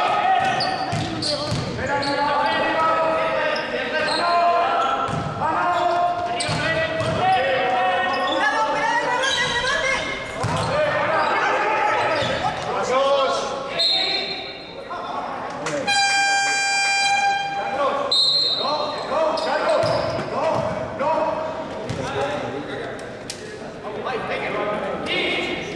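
Basketball game in an echoing sports hall: a ball bouncing on the court, with players and spectators shouting. About sixteen seconds in, the hall's game buzzer sounds for about two seconds, with short whistle blasts just before and after it.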